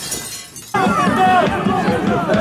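Raised voices of players and spectators at a football match. The sound drops to a brief hissy lull, then the shouting cuts back in abruptly just under a second in.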